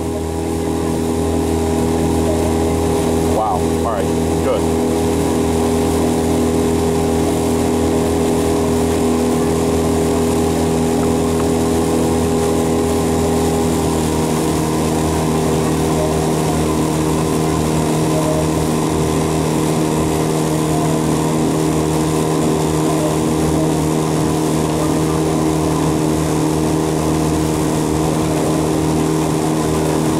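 Motor of a coaching launch running steadily at a constant speed, a continuous hum whose pitch shifts slightly about halfway through.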